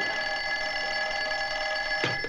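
Telephone bell ringing: one steady, warbling ring that cuts off abruptly at the end as the receiver is lifted.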